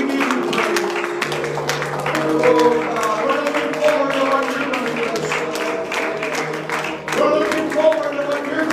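Live praise-and-worship music: a band with electric bass and keyboard playing while voices sing, with a sustained bass line coming in about a second in.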